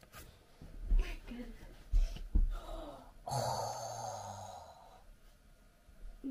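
A few dull thumps of someone moving about barefoot on a carpeted floor, then a long breathy sigh that fades out over about a second and a half.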